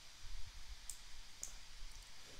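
Two faint, short clicks about half a second apart, from computer input at the desk, over a faint low rumble.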